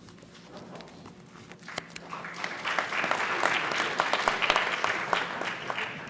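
Audience clapping, starting about two seconds in, swelling, then dying away near the end.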